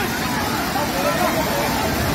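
Steady roar of a waterfall in sudden flood spate, a flash surge of water pouring over the rock face, with people shouting over it.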